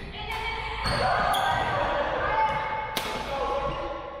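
Badminton rally in a gymnasium: rackets strike the shuttlecock three times, with squeaks of court shoes on the wooden floor between the hits.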